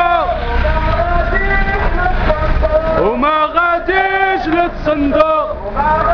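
Male voices chanting protest slogans in long, sung phrases, with a steady low rumble underneath.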